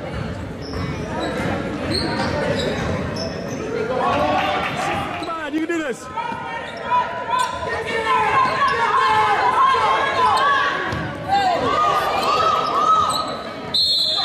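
Basketball bouncing on a hardwood gym floor, with players' and spectators' voices calling out and echoing in a large gym. The voices become louder and more continuous from about four seconds in.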